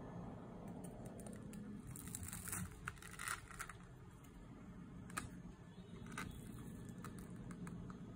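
A knife cutting through the crumb-coated crust of a fried stuffed bread, the crust crackling and crunching in a cluster of sharp crackles a couple of seconds in, then a few single crackles later.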